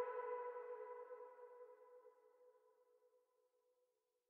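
The final note of an urban lo-fi hip hop background music track ringing out and fading away, dying to silence about two and a half seconds in.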